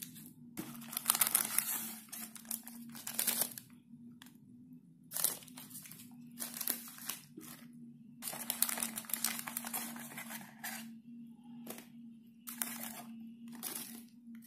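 Paper and paperboard rustling and crinkling as hands lift a paper-wrapped packet of fries out of a Happy Meal box and handle the box. It comes in several bursts of a second or two, over a faint steady low hum.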